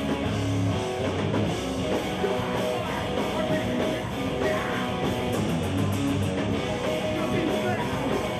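A rock band playing live at full volume: distorted electric guitars over a drum kit with cymbals, in a hardcore/noise-rock style.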